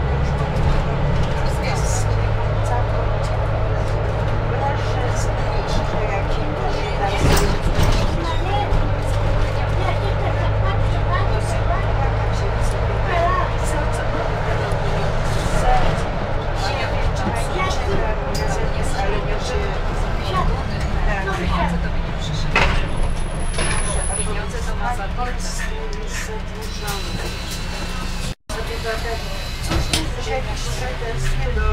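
Mercedes-Benz Citaro city bus heard from inside the passenger cabin while driving: a steady low diesel engine drone with road noise. People's voices talk over it, and there is a short high beep about three quarters of the way through.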